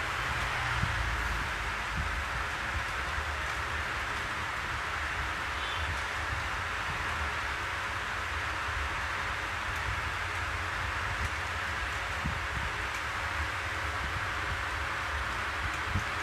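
Steady hissing background noise with a low rumble underneath, unchanging throughout, with no speech.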